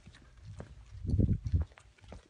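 Footsteps on a hard floor with handling knocks from a phone camera carried while walking: scattered light clicks, then a cluster of low muffled thumps about a second in.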